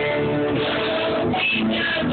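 A student ensemble playing a rock song on assorted percussion instruments and a drum kit, with pitched notes over a steady beat. It is recorded on a cell phone, so the sound is muffled and thin, with no highs.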